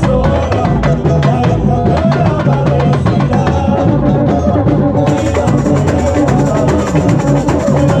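Carnival batucada drum section playing a loud, fast, continuous rhythm on hand-held drums.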